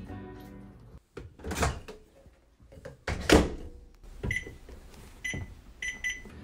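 Background music fading out, then two loud thuds a couple of seconds apart, followed by a microwave oven's keypad beeping three times, short beeps about a second apart near the end.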